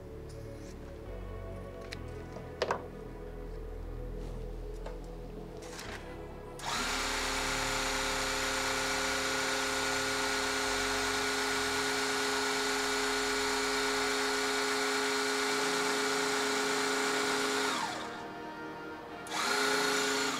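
An electric motor in a rosin press starts up and runs steadily at one pitch for about eleven seconds, then winds down with a falling tone. About a second and a half later it gives a second short run. A few light clicks from parchment handling come before it.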